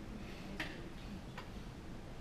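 Quiet room tone with a low hum, broken by two faint short clicks less than a second apart.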